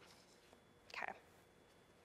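Near silence: room tone during a pause, broken by a single soft, breathy spoken "okay" about a second in.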